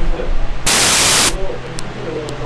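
A loud burst of static hiss starts about two-thirds of a second in and lasts under a second. It stands over faint, indistinct talk and a low hum, and is one of a run of such bursts about two seconds apart.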